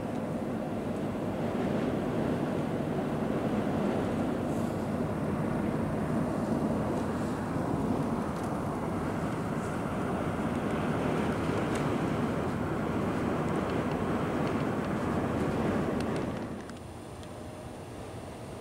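Steady rushing road and wind noise inside a moving car, which drops away suddenly near the end.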